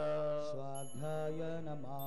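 A man chanting a Sanskrit verse in long, drawn-out sung notes, with a short breath partway through.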